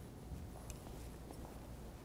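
Quiet room hum with a few faint clicks from fabric shears snipping away excess muslin on a dress form.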